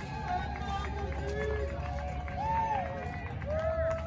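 Voices of several people on a beach talking and calling to each other at a distance, with no clear words, over a low rumble. Near the end one voice holds a long drawn-out call, like a crew command to lift the boat.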